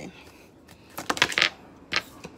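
Oracle cards being handled at a table: a short papery rustle of the deck about a second in, then a sharp tap as a card is laid down near the end.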